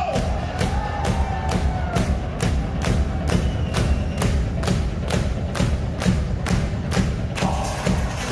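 Live electro-industrial (EBM) band music over a loud PA: a steady kick-drum beat a little over two strikes a second on top of heavy bass, with a held synth tone in the first couple of seconds.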